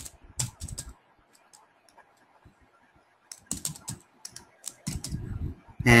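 Computer keyboard being typed on: quick keystroke clicks for about a second, a pause of about two seconds, then a second run of keystrokes.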